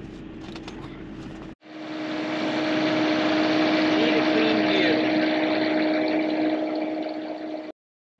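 Steady engine drone with a constant hum through it. It starts suddenly about a second and a half in, after a faint interior hum, and cuts off just before the end.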